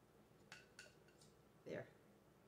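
Near silence with two faint light ticks about half a second in, from shredded hash browns being spread by hand in a glass baking dish.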